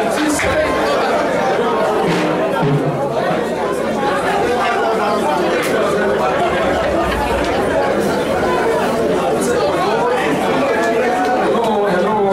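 Speech only: a man talking into a hand microphone, with other voices chattering over him in a large hall.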